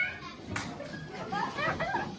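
Children's high voices calling out over room chatter, with a short knock about half a second in.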